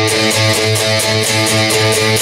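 Electric guitar picking the same octave shape over and over at a fast, even rate, the in-between strings muted, as in the song's octave riff.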